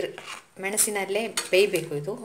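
A spoon clinking and scraping against a pan as a thick okra curry is stirred, with a few sharp clinks in the middle.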